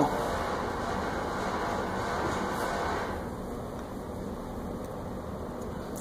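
A steady mechanical hum that drops a little in level about halfway through, with no distinct clicks or knocks.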